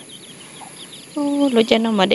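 A voice making long, drawn-out calls on a steady pitch, starting about a second in and breaking into shorter repeated syllables. Before it, a quieter second with faint high chirps.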